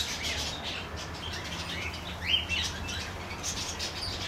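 Aviary birds chirping and tweeting, many short high calls overlapping, with one louder rising call a little after halfway. A low steady hum runs underneath.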